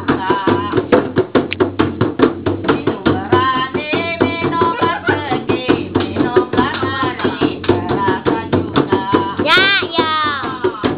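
Two large hand-played frame drums beaten in a quick, even rhythm, with a woman singing over them. Near the end her voice swoops up and then down on one long note.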